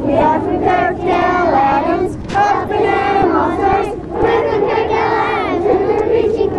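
A large group of children singing together in unison, in phrases with short breaks about two and four seconds in.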